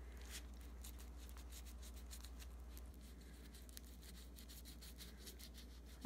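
Faint rubbing with soft, irregular scrapes and ticks: a gloved fingertip smoothing wet two-part epoxy clay over a doll's vinyl head.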